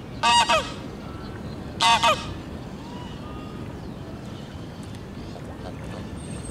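Domestic geese honking: two loud double honks, the second about a second and a half after the first, over a steady low background rumble.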